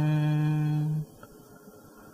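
A voice chanting Vietnamese Buddhist verse holds one long, steady note that stops abruptly about a second in, followed by a quiet pause.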